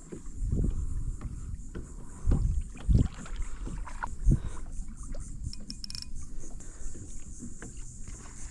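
Handling noise on a plastic kayak: dull bumps and knocks against the hull, several of them in the first half, with a few sharp clicks.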